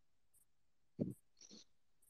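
Mostly quiet room tone, with one short, low voice-like sound about a second in, followed by a faint breathy sound.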